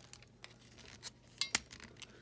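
Hard plastic parts of a Transformers Animated Blitzwing figure clicking and rubbing as they are folded by hand, with one sharper click about one and a half seconds in.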